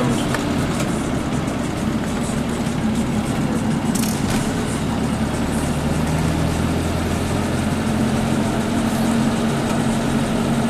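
Car engine running steadily with a low hum.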